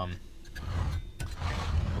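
Handling noise as the camera is repositioned: a low rumble with a few light clicks and knocks.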